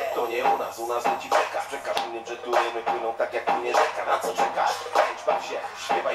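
Polish hip-hop track playing, with a voice over the beat.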